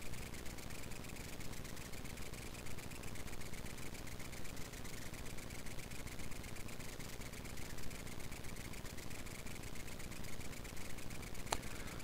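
Faint, steady background hiss and hum of room noise on the microphone, with a single sharp click near the end.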